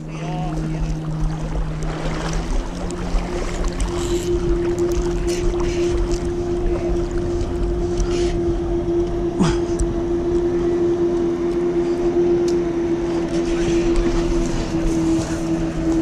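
A boat motor running steadily, its pitch stepping up about three seconds in and then holding, over rushing wind and water noise, with a few sharp clicks.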